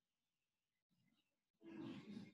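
Near silence: faint room tone through an online-call microphone, broken about a second and a half in by a short, rough burst of noise.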